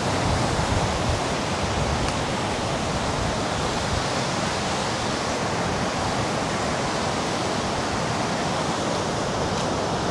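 Steady, even rushing noise of sea surf breaking close by, mixed with wind on the microphone, with no let-up.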